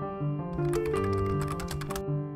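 Background music of sustained piano-like notes, joined about half a second in by a quick run of computer-keyboard typing clicks, a sound effect laid over the music.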